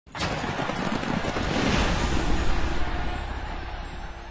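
Logo ident sound effect: a noisy rush over a low rumble that starts abruptly, swells, and fades over the last second or so.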